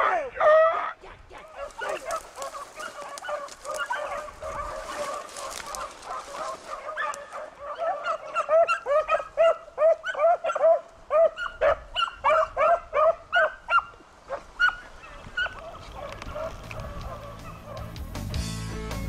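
A pack of beagles baying and barking while running a rabbit. The calls come in many short, overlapping yelps and howls, loud at the start, thickening into a steady chorus in the middle, then fading toward the end.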